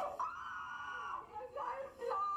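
A high-pitched squealing voice, held for about a second, followed by shorter voice sounds that rise and fall.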